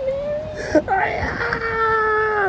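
A young woman's tearful, emotional voice: a wavering high whimper, then from about a second in a long, steady, high-pitched wail.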